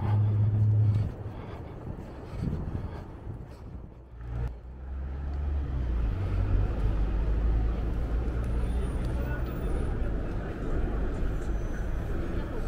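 Low engine rumble of city traffic and nearby vehicles. It is loud in the first second, dips, then settles into a steady drone from about halfway through.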